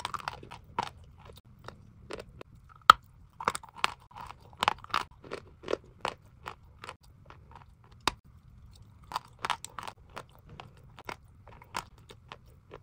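Chalk being bitten and chewed close to the microphone: irregular crisp crunches, the loudest about three seconds in and again near five seconds.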